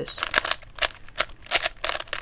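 3x3 Rubik's cube layers being turned fast in quick succession, the plastic pieces clicking sharply several times a second as a move sequence is run through.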